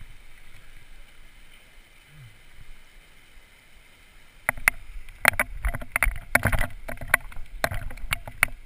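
Quiet at first, with only a faint steady hiss. From about four and a half seconds in, a mountain bike rolls over a loose gravel track, rumbling and rattling, with frequent sharp knocks and clatters from the bike as the wheels hit stones.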